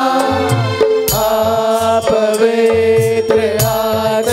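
A man singing a Hindi devotional bhajan into a microphone over steady held chords and a repeating rhythmic beat.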